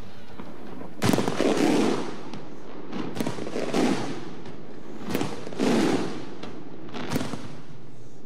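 Fireworks exploding: four sharp bangs about two seconds apart, each followed by about a second of rumbling crackle and echo.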